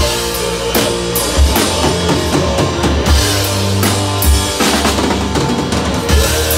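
Live rock band playing an instrumental passage: electric guitars and a drum kit, with sustained low notes and regular drum and cymbal strikes under a second apart.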